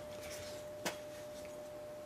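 Quiet room tone with a faint, steady high hum and a single sharp click a little under a second in.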